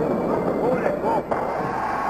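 Curling rink ambience from archival match footage: a steady rumble of a granite curling stone running down the ice, under the faint murmur of crowd voices.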